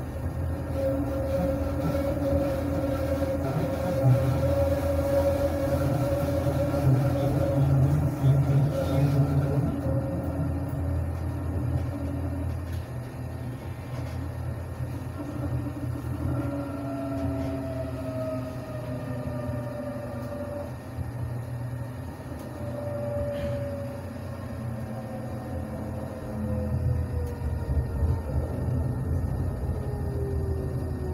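Tram running on its track, heard from on board: a steady low rumble of wheels and running gear with a whining motor tone, steady at first, then sliding down in pitch through the second half.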